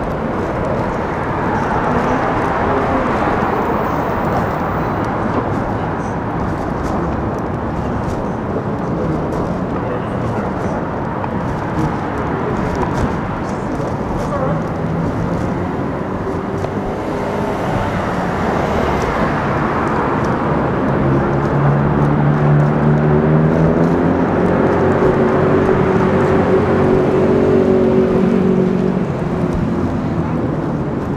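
Busy road traffic: a steady wash of passing vehicles. From about halfway a low, pitched engine tone builds up over it, rising slightly and loudest near the end.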